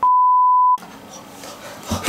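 Censor bleep: a steady pure tone of about 1 kHz, lasting about three quarters of a second, dubbed over a spoken word to blank it out.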